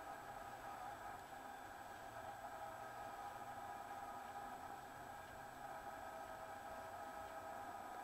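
Faint, steady background hum made of a few constant tones, with nothing else happening.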